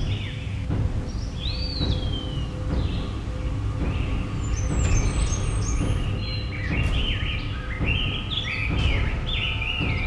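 Birds chirping over a deep rumble with repeated heavy thuds: the footsteps of a giant walking, in a cartoon soundtrack.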